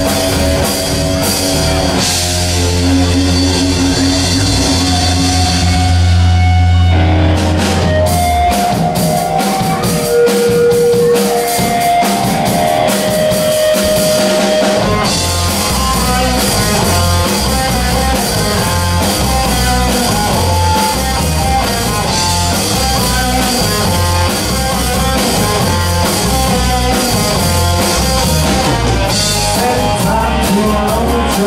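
Live rock band playing an instrumental passage on electric guitars, bass and drum kit, without vocals. A held chord rings for several seconds, the band thins out to single sustained guitar notes for a while, then the full band with drums comes back in on a steady beat about halfway through.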